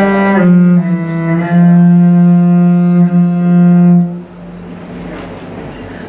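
Cello bowed in a long, held low note that shifts slightly lower under a second in, then stops about four seconds in, leaving a much quieter hiss.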